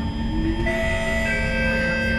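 SMRT C151 train's traction motors and inverter whining over the running rumble as it slows into a station, the whine changing in steps to new pitches as it brakes.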